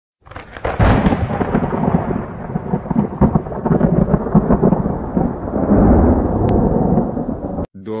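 Thunderstorm sound effect: a sharp thunderclap about a second in, followed by a long rumble of thunder that cuts off suddenly near the end.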